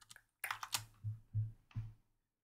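Computer keyboard keys pressed in a few short, separate clicks.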